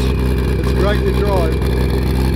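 An engine idling steadily close to the microphone, with a man's voice briefly over it about a second in.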